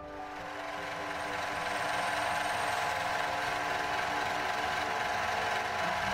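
Metal lathe running, a steady mechanical whir and rattle from its spinning chuck and geartrain. It fades in over the first two seconds and then holds level.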